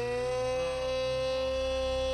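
One long held note that slides up in pitch at its start and then holds steady, with a low hum beneath.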